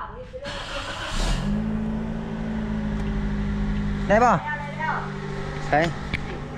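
A motorcycle engine is started on its electric starter. About half a second in it cranks briefly, then it catches and settles into a steady idle. It starts normally without needing a jump start.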